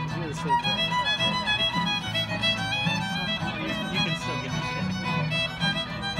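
Old-time fiddle tune played on fiddle with acoustic guitar accompaniment: a quick-moving fiddle melody over a steady pulse of low bass notes.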